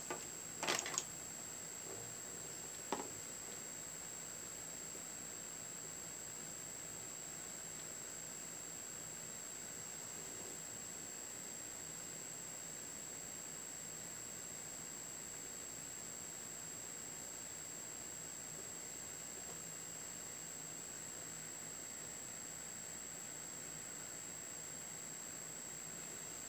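Quiet room tone: a steady hiss with a thin, high, constant whine. A short rustle or knock about a second in and a faint click about three seconds in are the only other sounds.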